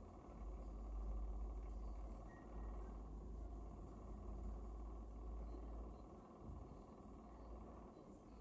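Quiet studio room tone: a steady low rumble with a faint hiss, no speech or music.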